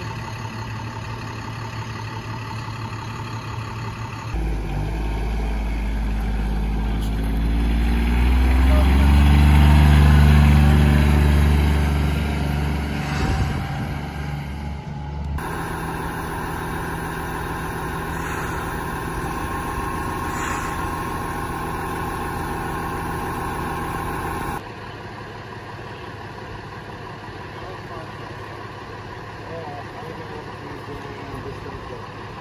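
Fire trucks' diesel engines idling, in several cuts. In the middle a heavy truck engine grows louder and rises in pitch, loudest about ten seconds in. After that, the Calgary Fire Department pumper, with its supply hose connected, runs at a steady pitch under a steady high whine.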